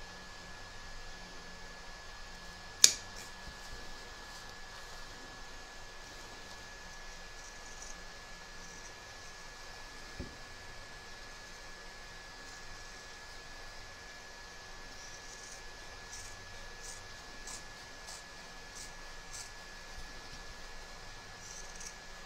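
Fabric scissors snipping faintly through layers of fabric and mesh stabiliser while trimming a seam allowance, over a steady low hiss. One sharp click about three seconds in stands out above the rest.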